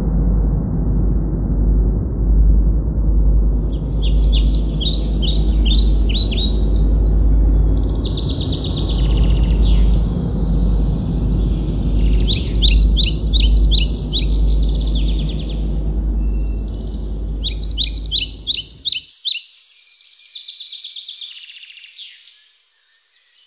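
Bewick's wren song: several bursts of rapid, high trilled notes and buzzy phrases, each a second or two long, with fainter calls between. Underneath runs a steady low rumble that cuts off abruptly near the end.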